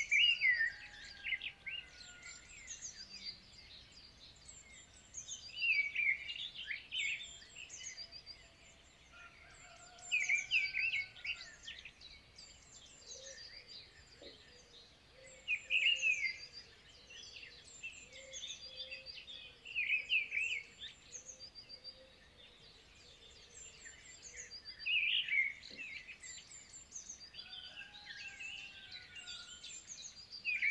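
Birdsong: a songbird repeats a short phrase of about a second and a half roughly every five seconds, with thin, high calls in between.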